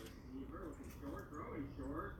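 Quiet pause with faint room tone and a faint, distant voice in the background.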